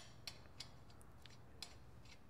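Near silence with a few faint, light metallic clicks: a steel lug nut being spun by hand onto a wheel stud on a brake hub.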